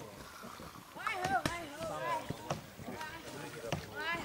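People's voices calling out and shouting, starting about a second in, with a few sharp clicks.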